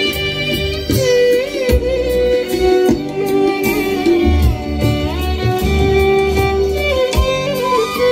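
Live band instrumental with a violin playing the lead melody, its notes sliding between pitches, backed by keyboard and hand drums keeping a steady rhythm.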